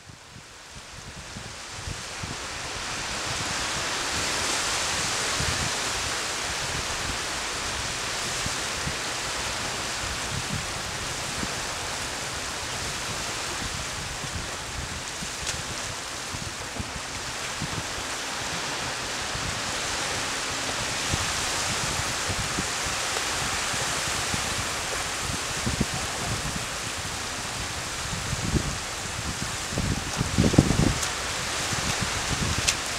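Small waves washing onto a sandy beach, a steady hiss of surf that fades in over the first few seconds, with low rumbles of wind on the microphone.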